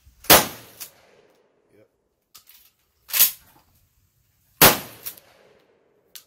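Mossberg pump-action shotgun fired three times: a loud shot with a ringing tail about a third of a second in, another around three seconds, and a third just before five seconds. Lighter clacks between the shots come as the pump is worked.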